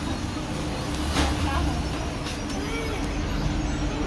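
Street traffic: a vehicle engine running nearby with a steady hum and low rumble, a brief hiss about a second in, and faint voices.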